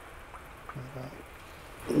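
Low-pressure aeroponics system running: a submersible pump feeding PVC spray nozzles that spray nutrient solution onto the roots inside a bucket, heard as a faint, steady watery hiss.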